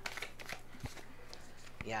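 A deck of tarot cards being shuffled by hand: a run of quick, light clicks of card edges, with one firmer tap about a second in.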